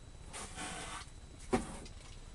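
Packaging rustling as items are rummaged through, then a single sharp knock about a second and a half in.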